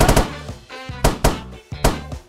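About five balloons being squeezed until they burst, in sharp pops: two together at the start, two about a second in, one near the end. Background music plays under them.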